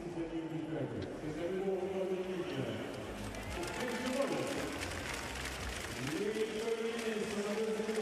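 Stadium crowd ambience with long, drawn-out voiced calls that rise and fall, several in a row, carrying through the stands.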